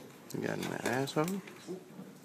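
A man's voice speaking briefly ("There..."), then low room sound.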